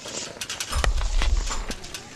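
Scattered sharp knocks and clacks of old street trades, irregular in rhythm, with a heavy low rumble from just under a second in until near the end.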